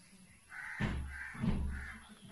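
Two short, harsh bird calls about half a second apart, heard faintly beneath the pause in speech.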